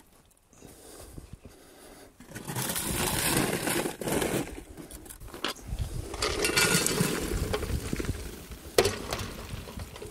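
Hot coals scraped and tipped from a metal pan onto the lid of a buried cast-iron Dutch oven, a gritty sliding clatter that starts about two seconds in, with a sharp metal knock near the end.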